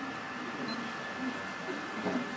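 Steady room noise with a thin, steady high tone and faint background voices; no distinct mechanical event stands out.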